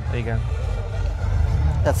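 A man's voice in short fragments, with a pause in between, over a steady low rumble; he speaks again near the end.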